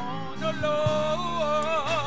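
A woman singing a gospel song through a microphone, holding long notes with wide vibrato over a steady instrumental accompaniment.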